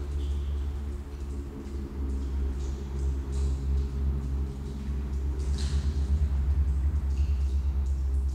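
Experimental drone music: a deep, throbbing low drone under several steady held tones, with a few brief hissing sounds high above, loudest about 5.5 s in.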